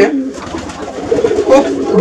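Domestic pigeons cooing steadily, with a man's voice speaking a word about one and a half seconds in.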